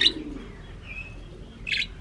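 Budgerigars chirping: a brief high whistled note about a second in and a sharper, higher chirp near the end.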